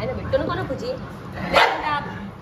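A dog barks once, loudly, about a second and a half in, with softer vocal sounds before it.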